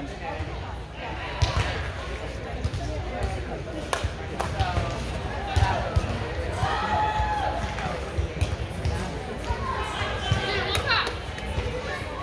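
Hands striking volleyballs in sharp slaps, a few times across the span, amid players' calls and chatter in a large, echoing indoor hall.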